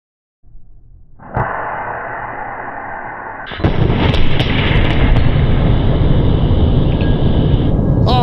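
Blast of a 150,000-volt plasma-cannon arc discharge slowed down eight times, heard as a long, deep rumbling boom. It begins about a second in and grows louder about halfway through.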